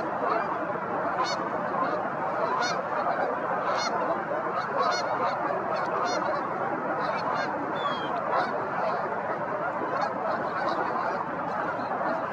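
A large flock of waterfowl calling: a dense, unbroken chorus of many overlapping calls, with sharper single calls standing out every second or so.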